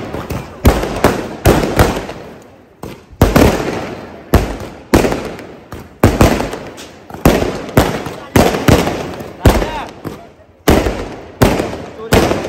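Fireworks bursting overhead, a rapid run of loud sharp bangs about one a second, each dying away in a brief echo, with short lulls between some of them.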